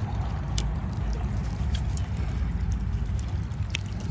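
Pruning snips clipping through small roots: a few faint, short snips over a steady low rumble.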